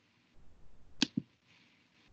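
A sharp click followed about a fifth of a second later by a duller knock, about halfway in, over faint hiss: an open microphone picking up clicking at a computer.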